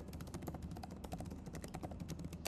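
Typing on a computer keyboard: a fast, faint run of key clicks.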